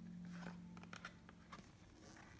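Near silence, with a few faint soft clicks and rustles of a cardboard board-book page being handled and turned. A faint low held tone fades out about one and a half seconds in.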